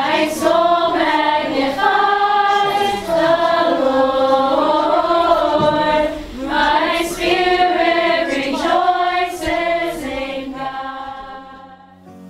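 A large group of young people singing a worship song together in unison, many voices blended. It fades out over the last two seconds.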